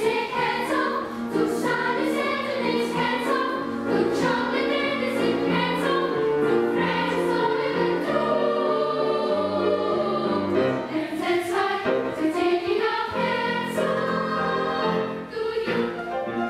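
Children's choir singing with piano accompaniment.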